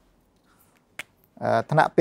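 A single sharp click about a second in, the snap of a whiteboard marker being uncapped, followed by a man starting to speak.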